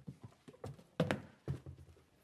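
A few short hollow knocks and rustles, the loudest about a second in, from a book being taken out of a bag on the floor.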